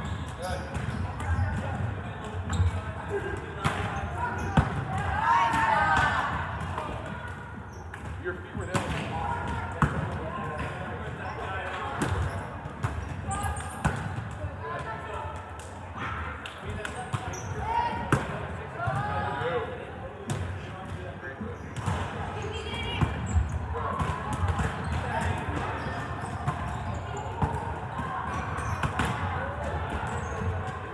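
Volleyballs being bumped, set and hit during a warm-up, with irregular sharp slaps and bounces on a hardwood gym floor, over the overlapping chatter and calls of many players.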